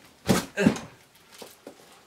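The lid of a foam carrying case is pulled open against its magnetic catches: two quick knocks and scrapes of foam in the first second, then a couple of faint clicks.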